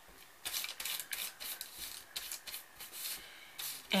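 Foam ink blending tool rubbed in quick, repeated strokes over crumpled printer paper: a dry, papery scratching rustle as distress ink is worked onto the sheet to pick up its wrinkles. The strokes come thickly at first and thin out later.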